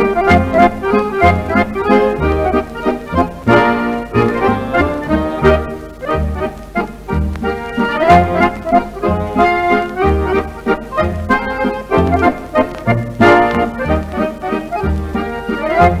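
Accordion quartet playing a mazurka, 1947 studio recording: accordion melody over guitar and bass keeping a steady pulsing beat.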